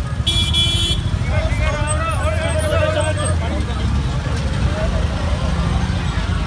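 Street traffic and wind rumble on the microphone, with a short vehicle horn toot just under a second long near the start, followed by people's voices calling out over the noise.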